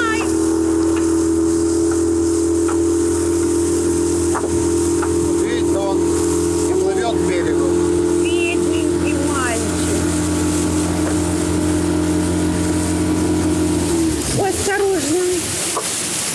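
Small boat's outboard motor running at a steady speed, a constant whine over hiss, then cutting off about 14 seconds in.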